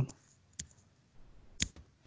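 Computer mouse clicking: a short click about half a second in, then a louder click about a second later, followed closely by a fainter one.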